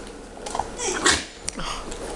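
A dog at play giving a short vocal sound about half a second in, followed by short noisy bursts and a few clicks.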